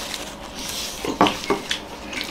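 Metal forks clinking and scraping against plates while noodles are eaten, with two sharper clinks a little after a second in.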